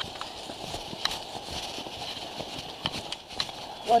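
Footsteps on a stone path: irregular short clicks over a steady background hiss.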